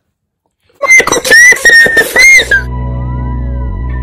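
A short burst of loud, high whistling notes, several short pieces rising and falling, about a second in. Then steady background music with long held tones takes over.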